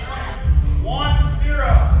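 A person's voice calling out, over a heavy low rumble that comes in about half a second in.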